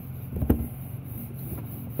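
A plastic LEGO model set down on a tabletop with a single knock about half a second in, then pushed along with a faint rubbing as it slides.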